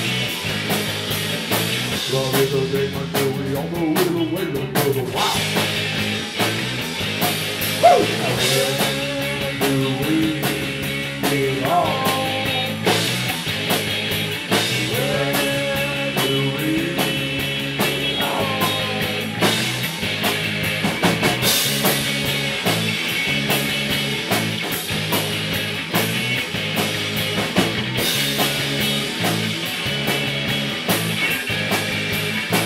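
A live rock band playing: electric guitars, bass guitar and drum kit, with a steady drum beat under sliding melody lines.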